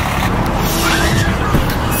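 Traffic on a busy road: a car passing close by, its tyre noise swelling and fading.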